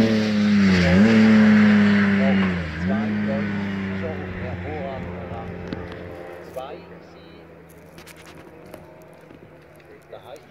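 Hill-climb race car engine at high revs pulling away, the pitch dropping and climbing again twice as it shifts up, about a second in and near three seconds. It then fades steadily into the distance over the next few seconds.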